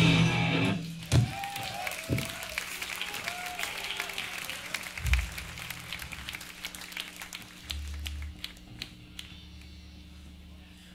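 Loud live hardcore punk band playing, which stops abruptly within the first second and rings out briefly. Scattered clapping from the crowd follows, thinning out over a steady amplifier hum, with a few stray guitar and bass noises.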